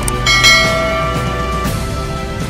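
A bell chime struck about a quarter second in, ringing and fading over about a second and a half, over background music: the notification-bell sound effect of a subscribe-button animation.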